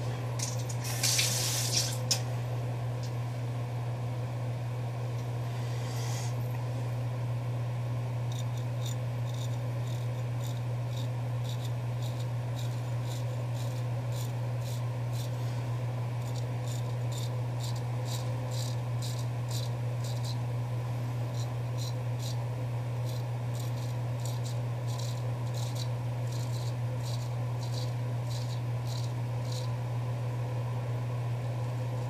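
Straight razor (a Douglas Cutlery custom) scraping through lathered stubble in short strokes, coming in quick runs of about two a second from several seconds in. A brief hissing rush about a second in, and a steady low hum underneath throughout.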